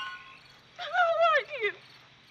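Crickets chirping in a night-time film soundtrack, with a woman's high, wavering crying sound lasting about a second, starting just under a second in and falling in pitch at its end.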